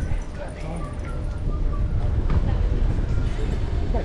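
Wind rushing over an action camera's microphone on a moving bicycle: a steady low rumble, with a few short high chirps in the first second and a half.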